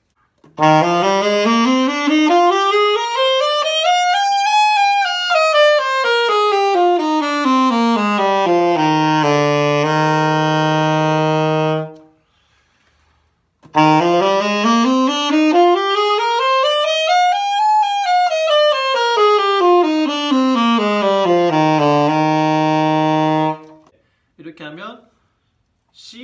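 Alto saxophone playing a C major scale across the instrument's whole range: a quick stepwise run from low C up to the top of the horn and back down, ending on a held low note. It is played twice, each pass about eleven seconds, with a short pause between.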